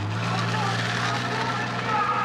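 A steady low hum with faint, indistinct voices over it.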